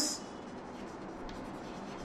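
Chalk writing on a chalkboard: faint scratching and light tapping strokes as a word is written out.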